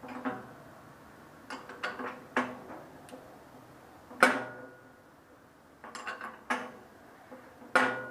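Wrench on the axle nut at the hub of a bandsaw's upper wheel, giving a dozen or so sharp metallic clinks. The loudest, about four seconds in, and another near the end each ring briefly. The nut is being set to the bearing preload at which the wheel doesn't wobble but spins freely.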